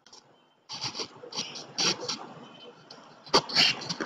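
A metal safety pin and its wire clip being handled and pushed through an aluminium bike-trailer arm bracket. It makes a run of irregular rattles and scrapes, with a sharp click a little over three seconds in.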